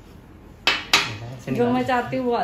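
Two quick, sharp clinks of a small hard object against a glass tabletop, about a quarter second apart, followed by voices.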